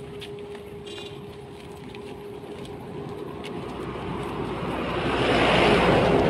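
Outdoor noise with a faint steady hum, then a rushing sound that swells over the second half and is loudest near the end.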